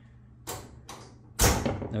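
Front door of a hydroponic grow box being pushed shut by hand: a couple of light taps, then a solid thud about one and a half seconds in as it closes.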